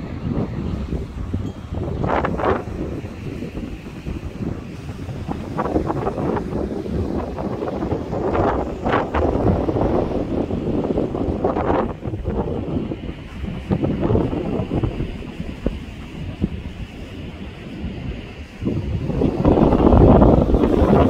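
Wind buffeting the microphone in uneven gusts, a low rumble that swells and falls throughout, loudest near the end.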